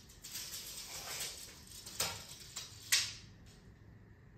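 Steel tape measure being handled: the blade slides out with a light rasp, then two sharp clicks about two and three seconds in.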